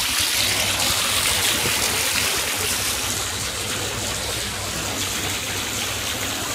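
Jets of water from a fountain spraying and splashing close by, a steady rushing hiss.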